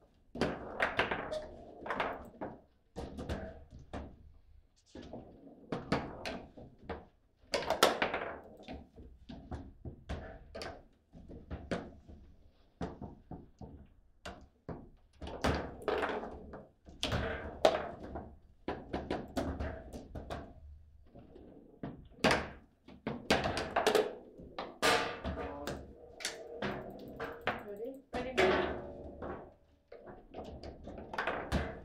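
Table football in play: irregular runs of sharp knocks and clacks as the ball is struck by the plastic players and bangs against the table walls, and the rods are snapped and stopped.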